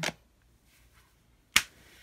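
A single sharp, loud snap about one and a half seconds in, made by the reader's hand as the tarot card is laid down.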